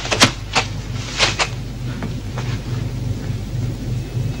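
Sharp hits and thuds from a hand-to-hand fight, a few close together in the first second and a half and fainter ones later, over a steady low hum.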